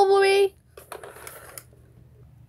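A voice saying "bubble", its last syllable held on one steady pitch for about half a second, followed by a few faint clicks and rustles.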